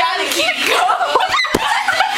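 Two girls talking and laughing excitedly, with one sharp thump about one and a half seconds in as a stuffed toy knocks against the camera.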